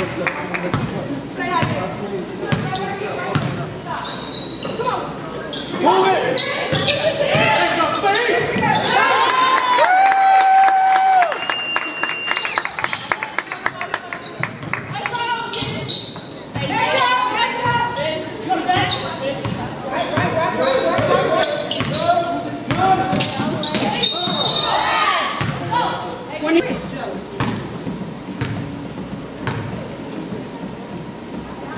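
Basketball being dribbled and bounced on a hardwood gym floor, with players and spectators shouting and calling out throughout, echoing in a large gym.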